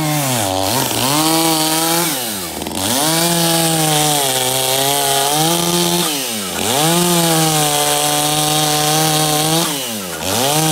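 Gas chainsaw engine running at high revs, the pitch dipping sharply and climbing straight back four times: about half a second in, around two and a half seconds, around six and a half seconds, and at the end.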